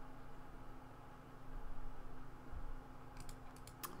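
Quiet room tone with a faint steady hum, then a few quick, sharp clicks at a computer near the end.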